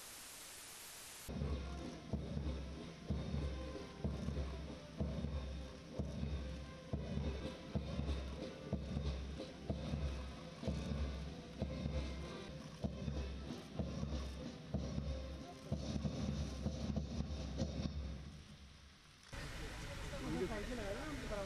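Military band music with a steady, heavy drum beat and pitched parts above it. It starts about a second in after a short stretch of hiss and fades out near the end.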